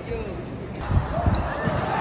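Dull thumps of a ball bouncing on a wooden sports-hall floor, a few in quick succession, with players' voices around it in a large hall.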